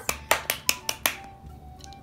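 A quick run of about six sharp clicks, about five a second, getting quieter and stopping about a second in.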